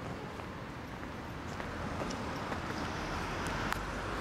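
Steady outdoor street background noise with a few faint clicks as the handheld camera is moved about.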